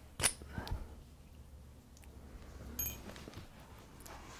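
A sharp click about a quarter second in, then a few faint knocks, from hands handling the induction coil and deflection tube apparatus on the table; a very short high squeak near three seconds, over a low steady hum.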